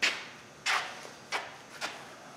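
Four short scuffing footsteps on a concrete floor, roughly two-thirds of a second apart.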